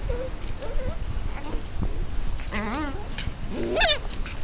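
Kishu puppy yelping and squealing as an adult Kishu dog pins and mouths it in play-discipline: a few faint whines early on, then two wavering cries about two and a half and three and a half seconds in, the second rising higher.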